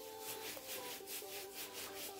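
Paintbrush bristles stroking wet conductive ink onto a glass flask, brushing back and forth in quick repeated strokes, about four to five a second.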